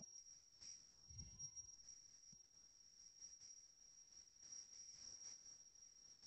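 Near silence: room tone with a faint, steady high-pitched electronic whine and a faint low bump about a second in.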